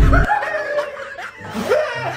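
People laughing in short repeated snickers, about two a second. A loud low rumble cuts off abruptly just after the start.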